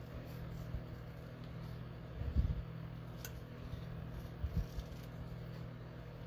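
Small craft scissors snipping around a shape in patterned paper, faint, with soft low bumps a couple of seconds in and again a couple of seconds later, over a steady low hum.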